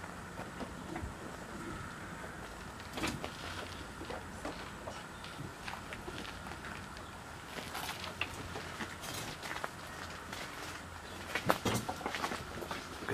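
Quiet outdoor background noise: a steady low hum with scattered short clicks and knocks, a few of them about three seconds in and a cluster in the second half.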